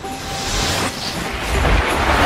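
Cinematic intro sound effect: a rushing whoosh over a deep rumble, swelling slightly as it goes.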